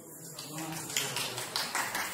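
A few people clapping hands, an irregular patter of claps that starts about a second in, with voices alongside.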